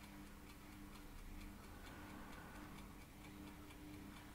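Faint, regular ticking of a clock, over a low steady hum.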